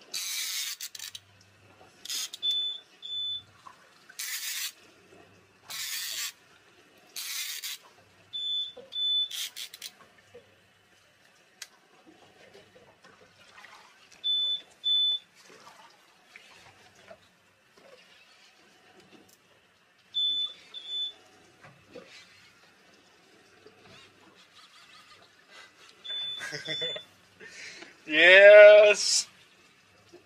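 An electronic alarm gives a short, high double beep that repeats about every six seconds. In the first ten seconds there are several brief bursts of hiss-like noise, and a second or two before the end comes a loud, drawn-out vocal sound that bends in pitch.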